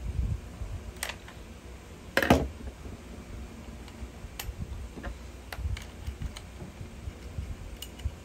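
Screwdriver and hands working on a plastic MP5-style gel blaster receiver: light clicks and handling rubs as the screws at the back are turned, with one louder clack about two seconds in.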